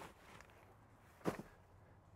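Quiet, with a single short knock about a second and a quarter in, like a step or a bump while moving about a van's cab.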